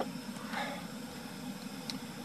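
Small power inverter being picked up and handled: a faint click at the start and a light tick near the end, over a steady low background hum.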